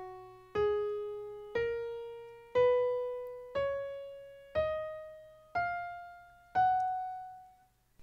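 A piano-voiced software instrument plays an F-sharp major scale upward from F-sharp to the F-sharp an octave above, one note about every second. Each note rings and fades before the next.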